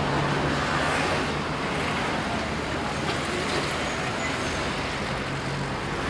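Steady road traffic noise from a city street, an even wash of passing-car sound with no distinct single event.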